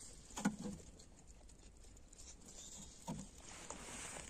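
Faint soft tapping of turkeys pecking at feed in a plastic trough, with two slightly louder short sounds, one about half a second in and one just after three seconds.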